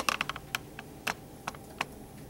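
A run of quick, irregular light clicks, about a dozen in two seconds, bunched together at the start and then spaced out, like keys being tapped.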